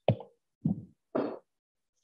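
A short, sharp knock picked up by a microphone, followed by two brief softer sounds about half a second apart.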